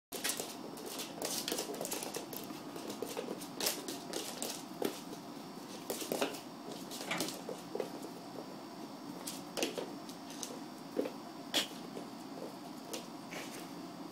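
A cat's claws scratching and scrabbling on a hardwood floor as it plays, in irregular scratches and light taps, a few of them louder.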